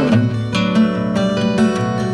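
Acoustic guitar playing a brief instrumental passage between sung lines of a folk song, with no voice.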